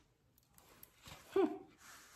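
Mostly quiet room tone with one short, falling vocal exclamation from a woman, like an admiring 'ooh', about one and a half seconds in.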